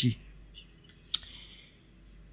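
A single sharp click about a second in, against faint background hiss; a voice trails off at the very start.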